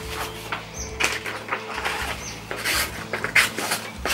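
A sheet of paper rustling as it is handled and sliced with a small fixed-blade knife. The edge has been blunted by rope cutting, so it skips along the paper and tears it rather than slicing cleanly.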